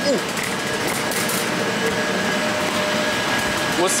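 Steady whoosh of ceiling-mounted refrigeration evaporator fans in a chilled room, with faint steady hums under it. A man's short 'ooh' at the start.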